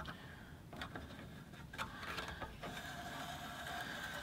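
Faint clicks and light handling of small metal parts as the lower rear blade guide of a Burgess BBS-20 bandsaw is nudged into position by hand.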